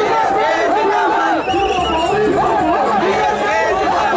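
A man's voice shouting into a microphone through a loudspeaker without a break, over the noise of a crowd.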